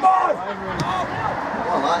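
Men's voices talking and shouting, ending in a shout of "Come on!"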